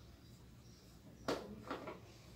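Hard kitchen objects handled on a countertop: one sharp click a little over a second in, then two lighter clicks shortly after.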